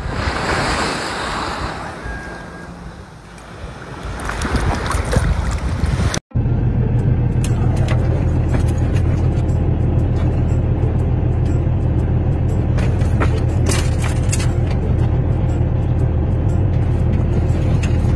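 Sea water washing and lapping around a swimming cat for about six seconds. After a sudden cut comes a steady, loud low rumble of a big truck's engine idling in the cab, with scattered light clicks.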